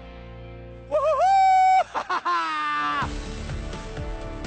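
A man's excited "whoo" yell as he launches on a zipline, given twice: first a high call that wobbles and then holds for under a second, about a second in, then a lower, slightly falling one soon after. Music plays steadily underneath.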